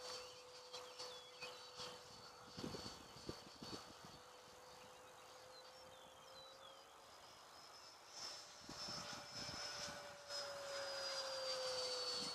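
Electric ducted-fan jet of a 90 mm Stinger RC model flying overhead: a faint, steady whine that grows louder and rises slightly in pitch in the second half, then slides down in pitch near the end.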